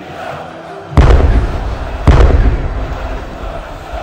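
Two fireworks bursts about a second apart, each a sudden boom that fades away, over a background of crowd noise.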